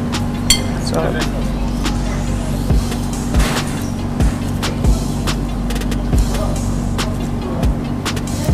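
Large chef's knife slicing ripe plantain into a bowl, heard as soft, irregular knocks, over a steady background of music and hum.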